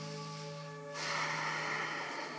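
Soft background music with sustained, steady tones. About a second in, a breathy hiss joins it, like an audible out-breath.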